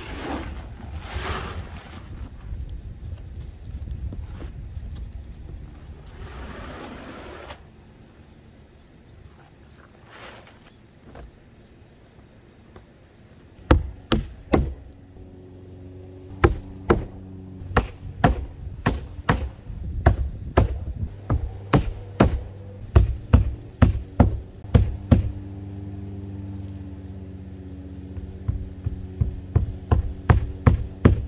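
A hammer driving roofing nails through rolled asphalt roofing into the roof deck. Sharp strikes come singly and in quick groups from about halfway in. Before that comes a rustling scrape as the heavy roofing sheet is handled and laid down.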